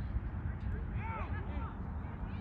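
Distant voices calling out across the field, starting about a second in, over a steady low rumble.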